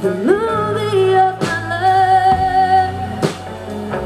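Live band playing: a woman's voice holds one long sung note that slides up at the start and wavers, over electric guitar, bass and drum kit. Drum and cymbal hits come about a second and a half in and again near the end.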